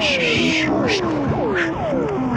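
Modular synthesizer sound effects: overlapping downward pitch sweeps, about two a second, mixed with short bursts of hiss.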